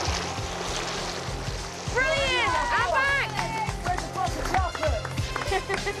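Splashing of a swimmer in open water, then, about two seconds in, loud excited shouts and whoops from onlookers cheering him on, over background music. A laugh comes at the very end.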